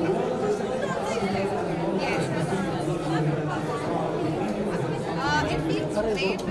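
Voices talking over one another in an indistinct chatter, with no single clear speaker.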